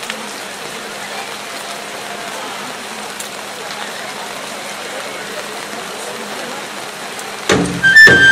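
A steady hiss of outdoor background noise with faint murmuring voices, then loud dance music for a yosakoi team starts suddenly near the end.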